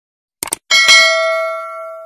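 A quick double mouse click, then a bright bell ding with several ringing tones that fades out over about a second and a half. This is the sound effect of the notification bell being clicked in a subscribe animation.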